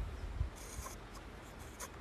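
Faint scratchy rubbing of a volcanic-stone face roller rolling over skin, with a few soft low bumps of handling near the start.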